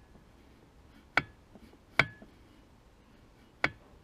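Three sharp metallic clinks, each with a brief ring, as a connecting rod knocks against the aluminium block of a Toyota 1NZ-FE while the crankshaft is turned by hand: the rod is hitting the block, which still needs clearancing.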